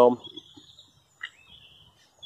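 Faint birdsong: thin high whistled notes, with a short rising chirp about a second in.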